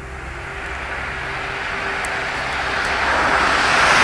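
A car approaching, its engine and road noise growing steadily louder as it draws close.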